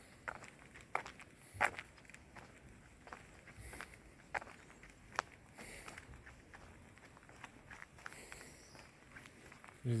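Footsteps of a person walking at an easy pace on an asphalt lane, one faint step about every two-thirds of a second.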